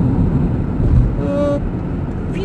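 Steady drone of car engine and tyre noise heard inside the cabin while driving at highway speed, with a brief wordless vocal sound about a second and a half in.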